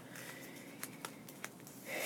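Faint rustling as a hand peels the paper label off a ball of yarn, with a few small ticks of paper and fingers around the middle.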